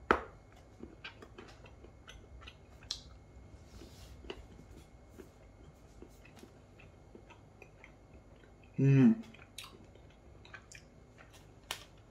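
A person chewing a chilled chocolate bar up close, with scattered small crunches and mouth clicks and a sharper click at the very start. About nine seconds in comes a brief voiced sound from the eater.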